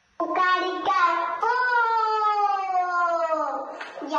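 A high voice from the edit's soundtrack: a few short syllables, then one long drawn-out note that glides slowly down in pitch.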